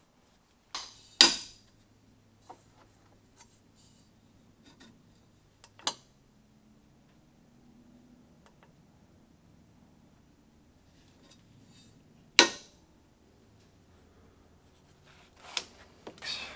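Sharp hard clicks and knocks of a digital angle gauge being set down on and moved along a bent steel intercooler pipe on a workbench: two close together about a second in, the loudest, then single ones spaced several seconds apart, with faint handling ticks between.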